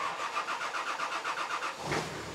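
Nissan Patrol's engine cranking on the starter with a fast, even pulsing for nearly two seconds, then catching near the end and settling into an idle.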